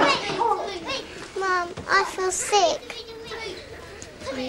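Laughter and high-pitched voices, a young girl's among them, without clear words.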